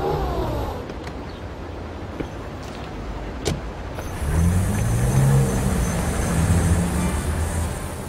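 A car engine running at low speed; about four seconds in its low note grows louder and rises as the vehicle pulls away. A single sharp click comes just before.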